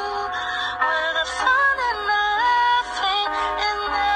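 Intro theme song: a sung melody over a music backing, its held notes sliding from one pitch to the next.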